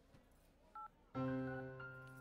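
A single short two-tone telephone keypad beep just under a second in, over near silence. About a second in, a steady held musical note starts and carries on.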